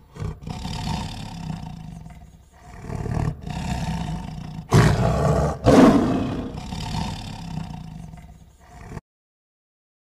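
Tiger roaring: a string of deep, rough roars, loudest about five to six seconds in, cutting off suddenly about nine seconds in.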